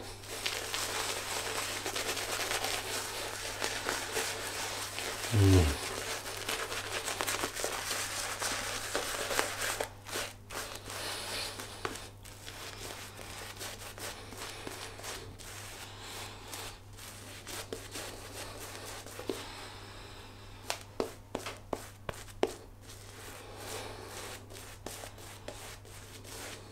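Synthetic shaving brush scrubbing soap lather into beard stubble: a steady bristly, crackling swish for about the first ten seconds, then softer, with many short separate strokes. A brief falling vocal hum about five seconds in.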